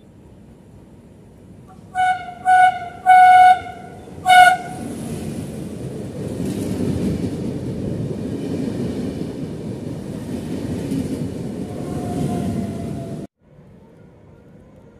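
Train horn sounded in four short blasts, the third the longest, from an approaching regional train with double-deck coaches. Then comes the rumble of the train running past along the platform, which cuts off suddenly near the end.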